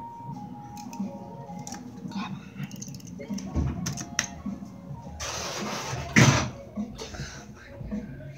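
Soft background music with notes stepping down in pitch, heard inside an elevator cab. About five seconds in comes a burst of rushing noise that ends in a low thump.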